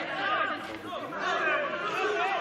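Many voices shouting and chattering over one another at once, growing louder about a second in.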